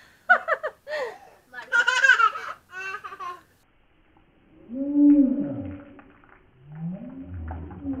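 A woman laughing for the first few seconds, then after a short pause making long open-mouthed vocal sounds, gargling, as water pours from a plastic bottle held overhead into her mouth.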